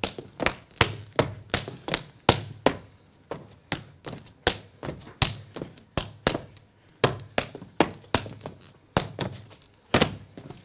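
Cretan dancers' percussive strikes in the pentozali dance, with no music: a steady, even rhythm of sharp slaps and stamps, about three a second.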